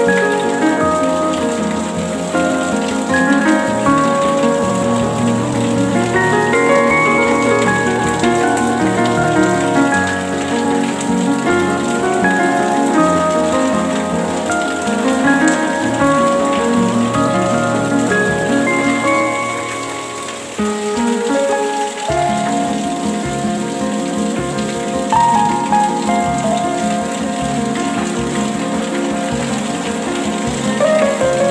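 Steady rain recording mixed with instrumental music of slowly changing held notes; the music moves into a new passage about three quarters of the way through.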